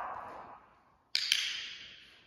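A sharp double click about a second in, the two clicks a fraction of a second apart, ringing off in the room, after the fading tail of an earlier sound.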